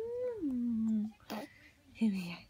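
A baby's drawn-out whiny cry in the first second, rising then falling in pitch. It is followed by a short smack about two-thirds of the way through.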